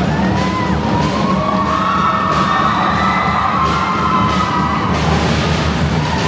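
Pearl drum kit played in a solo, a steady run of drum and cymbal hits, with a young crowd cheering and whooping over it.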